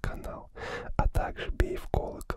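A man's close whispered speech, with several sharp clicks between the words.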